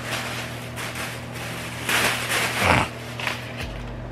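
Rustling and rummaging in a plastic shopping bag as items are searched for and pulled out, with crackling swells about halfway through, over a low steady hum.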